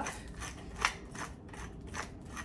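Large wooden pepper mill grinding black peppercorns: a run of quiet, irregular crunching clicks as the top is twisted back and forth, one louder crack a little under a second in.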